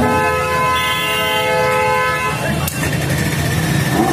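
A vehicle horn sounds one steady blast of about two seconds, then cuts off. Street noise and engine rumble run underneath.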